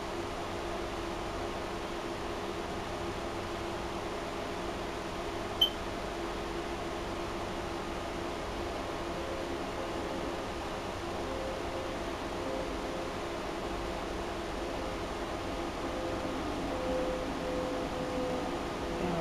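Steady hum of a running fan, with one short click about five and a half seconds in.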